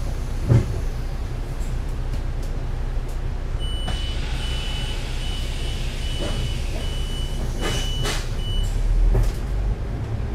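Double-decker bus engine idling at a stop, heard from on board, with a brief thump about half a second in. A run of about seven evenly spaced high beeps follows over some five seconds, typical of the bus's door-closing warning. Near the end the engine runs up louder as the bus pulls away.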